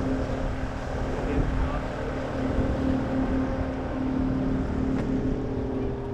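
Small boat's outboard motor running steadily at low revs, with wind buffeting the microphone.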